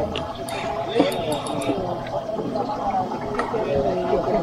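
Indistinct voices of several people talking over one another, with a few short sharp clicks in the first two seconds.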